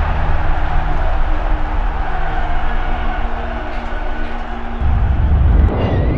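Intro sound design for a channel logo sting: a loud rumbling drone with steady held low tones under a noisy wash, swelling into a deep bass rumble about five seconds in.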